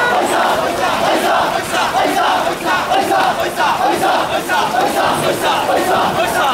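A large group of men shouting together in rhythm, the 'oissa' call of Hakata Gion Yamakasa bearers running a kakiyama float.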